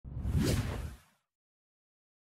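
A single whoosh sound effect about a second long, swelling quickly and then fading away, with a deep rumble under a high hiss.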